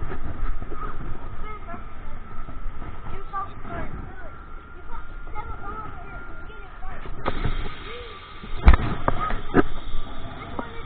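Indistinct voices of people echoing around a large indoor hall. Near the end there are two sharp knocks, with a few fainter ones.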